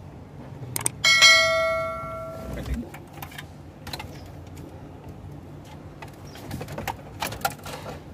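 A click, then a single bright bell chime about a second in that rings out and fades over about a second and a half: a subscribe-button notification sound effect. After it come scattered light clicks and knocks from hands handling the car stereo and its wiring.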